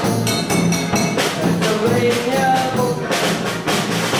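A polka band playing live: accordion melody over an alternating oom-pah bass, with snare drum and a large bass drum beating a brisk, even two-beat rhythm.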